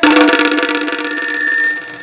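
A sustained chord held on an electronic keyboard, with a higher note joining about a second in, fading out just before the end.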